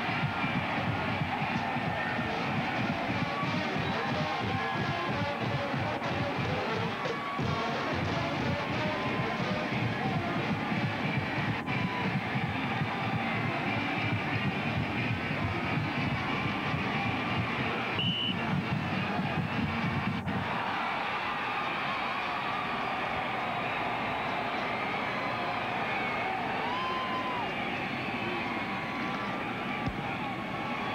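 Band music playing over stadium crowd noise. The heavy low part of the sound stops abruptly about two-thirds of the way through, leaving the lighter music and crowd.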